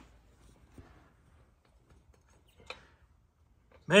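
Near silence: room tone with a few faint, short clicks, the clearest about three quarters of the way through.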